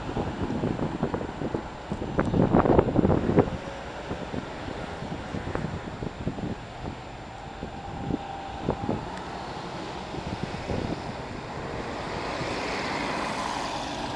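Street traffic with buses moving along the road, and wind buffeting the microphone in loud gusts a couple of seconds in. Near the end an articulated bus draws close and its engine and tyre noise grow louder.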